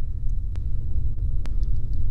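Steady low rumble in the recording's background, with two faint clicks about half a second and a second and a half in.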